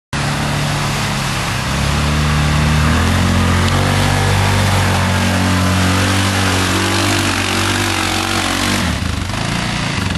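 Yamaha Rhino side-by-side's single-cylinder engine working hard under load as it climbs through mud, its pitch stepping up twice in the first few seconds, then holding steady. Near the end the engine note drops away.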